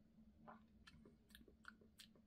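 Faint mouth sounds of someone tasting a sip of liquid: about five small lip smacks and tongue clicks, spread out over the two seconds, over a faint steady hum.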